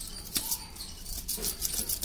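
Knife blade scraping scales off a large fish: a run of quick, scratchy strokes, sharpest early on.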